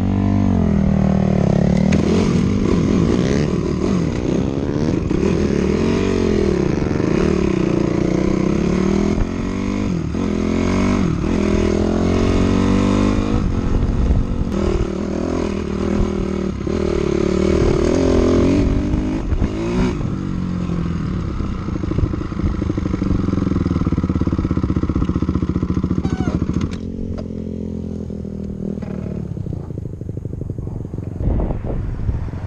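Dirt bike engine under way, its pitch rising and falling again and again as the throttle is opened and closed through the gears. It holds steadier for a while, then eases off and runs quieter for the last few seconds.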